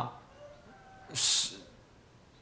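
A man's short, sharp breath, a hiss about a second in, drawn between phrases of speech.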